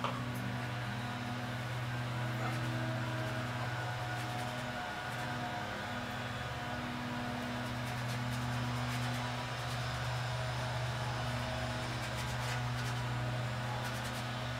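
Steady low mechanical hum, like a fan or motor running, holding level throughout, with one short click at the very start.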